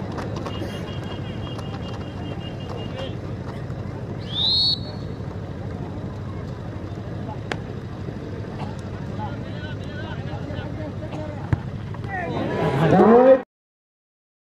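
A large outdoor football crowd murmuring steadily while a penalty kick is awaited. About four seconds in comes one short, high referee's whistle blast, the signal for the kick. Near the end the crowd's voices swell into shouting as the taker starts his run-up, then the sound cuts off suddenly.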